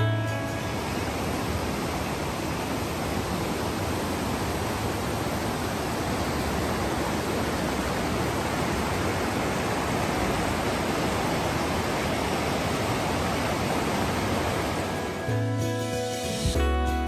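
Rapids of the Little Susitna River, a glacial river rushing over boulders: a steady rush of white water. Acoustic guitar music fades out at the start and comes back in near the end.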